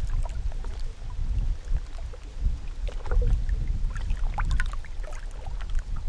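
Outdoor ambient noise with no music: a steady, gusting low rumble and scattered faint ticks and clicks.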